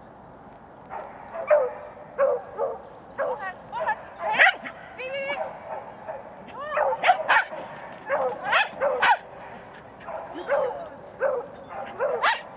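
A dog barking excitedly during an agility run: about fifteen short, sharp barks, starting about a second and a half in.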